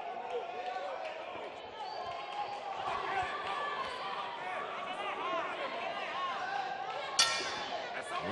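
Voices of a crowd talking in a large hall, then about seven seconds in a single short strike of the boxing ring bell, signalling the start of round two.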